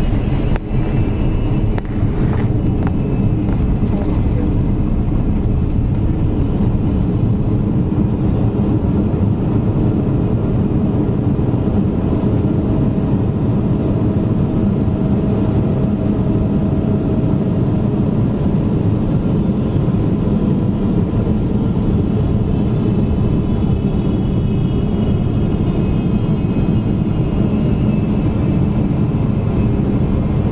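Cabin noise of a Boeing 777-300ER rolling out on the runway after landing, heard beside its GE90 engine: a steady, loud rumble with a tone in it that slides lower a little past halfway.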